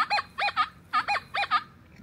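Nokta Triple Score metal detector in Relic mode giving a quick run of short tones, each bending up and down in pitch, as the coil sweeps over a deep target. With the iron reject (IR) setting at four, this is the iron sound that marks the target as a big piece of iron.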